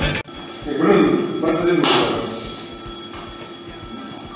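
Rock music that cuts off abruptly just after the start, followed by a person's voice, words unclear, that fades after about two seconds.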